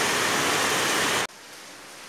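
Rain falling outside, a steady loud hiss that cuts off suddenly a little over a second in, leaving quiet room tone.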